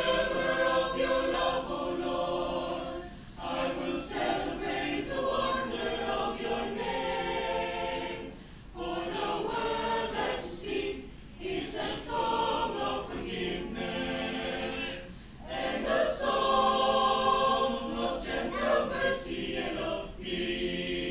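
A mixed choir of men and women singing a cappella, in sustained phrases separated by short breaks every few seconds.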